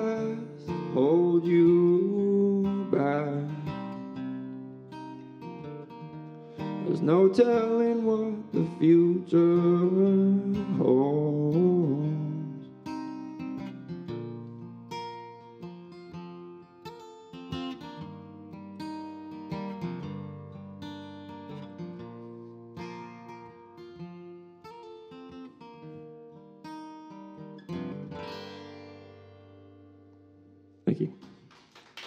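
Male voice singing over a strummed acoustic guitar for about the first twelve seconds. Then the guitar plays on alone, picked notes growing gradually quieter as the song winds down.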